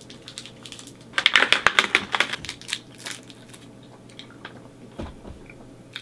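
The wrapper of a small advent-calendar chocolate crinkling as it is unwrapped by hand: a dense run of crinkles for about a second, then a few scattered ones.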